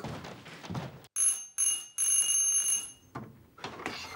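A doorbell ringing three times: two short rings, then a longer one.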